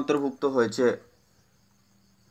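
A man's voice speaking for about the first second, then a faint, steady, high-pitched background chirring of the kind crickets make.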